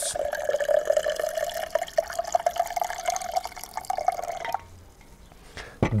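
Hibiscus tea poured in a steady stream from a stainless-steel vacuum flask into a cocktail shaker. It stops abruptly about four and a half seconds in.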